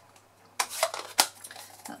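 A few light, sharp clicks and taps of a plastic ink pad case being handled and set down on a craft mat.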